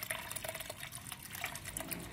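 A thin stream of engine oil thinned with gasoline pouring from a motorcycle's drain hole into a nearly full drain pan, with a steady patter of small splashes and trickling.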